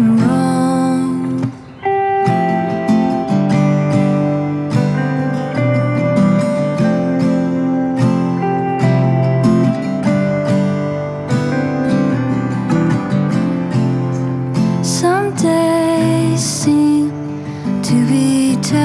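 Live acoustic and electric guitar duo: a strummed acoustic guitar with an electric guitar playing held notes over it. The music drops out briefly about a second and a half in, and there is a rising glide near the end.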